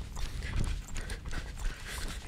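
Footsteps of a person jogging, a steady rhythm of steps, over a low rumble.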